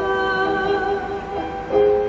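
A woman singing an Arabic art song. She holds one long note, then moves to a slightly higher note near the end, with instrumental accompaniment.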